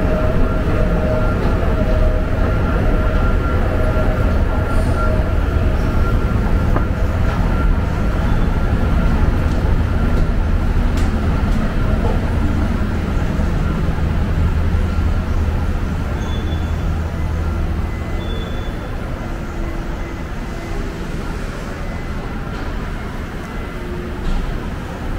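Daegu urban railway train running: a steady low rumble with a thin steady whine over it, the rumble easing off about three-quarters of the way through.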